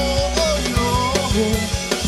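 Live rock band playing an instrumental passage: a drum kit with steady bass-drum and snare hits under electric guitars and bass guitar, with a lead line bending in pitch.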